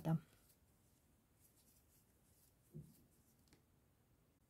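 Faint rustle of yarn being worked into stitches with a metal crochet hook, with a soft knock and then a small click in the second half.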